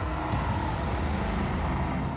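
A steady low rumble with a hiss over it, starting abruptly and holding level: a dramatic sound-effect swell under the reaction shots.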